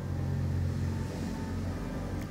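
A steady low hum with no speech, its pitch shifting slightly about halfway through.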